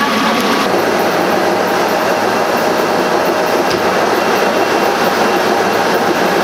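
Loud, steady machinery noise with a clattering texture.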